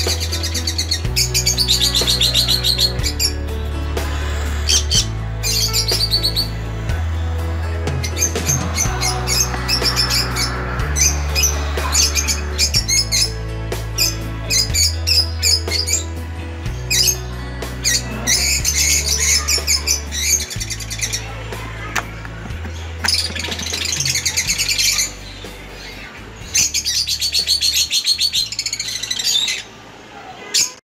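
Cockatiels chirping in repeated high bursts over background music with a steady bass line; the chirping pauses briefly near the end.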